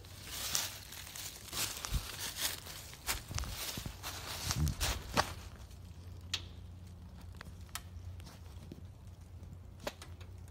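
Footsteps crunching and rustling through dry leaf litter, dense for the first five seconds and then thinning to occasional crackles.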